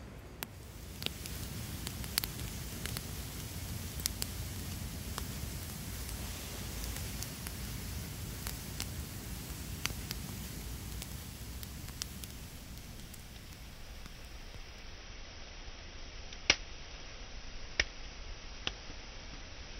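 Wood log fire burning with a steady rush and irregular sharp crackles and pops, the loudest pop near the end.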